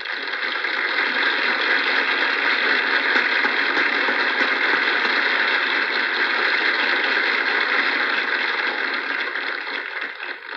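An audience applauding: many hands clapping at once, starting suddenly, holding steady, and thinning out near the end.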